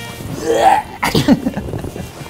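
A man's sudden loud vocal outburst: a rising cry about half a second in, then an explosive, sneeze-like burst at about one second, followed by laughter. Music fades underneath.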